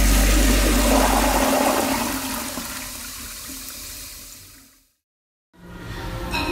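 A toilet flushing: a loud rush of water that dies away over about five seconds and cuts off into silence.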